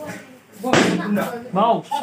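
A sudden loud slam about three-quarters of a second in, amid people's voices.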